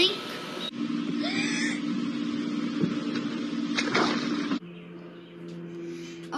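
Soundtrack of children's home-recorded video clips played over a video call. A child's spoken line ends, then the sound changes abruptly at two edit cuts to background hiss with a steady low hum and a single knock.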